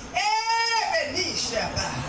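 A woman's voice through a microphone: a long, high held tone lasting under a second near the start, then shorter broken sounds.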